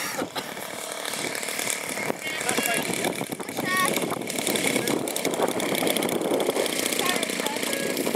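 Engine of an Extra 330 SC radio-controlled model aerobatic plane running as the plane comes in low and lands, getting louder from about halfway through as it nears.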